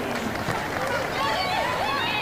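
Footballers' voices calling out on the pitch, several short raised calls about halfway through, over a steady open-air hiss with no crowd noise to speak of in the near-empty stadium.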